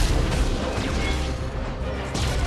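Film score music mixed with action sound effects, with a loud low hit right at the start.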